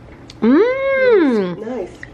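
A woman's drawn-out, sing-song 'mmm' of delight at the taste of the cucumber juice. It rises and then falls in pitch over about a second and is followed by a short murmur.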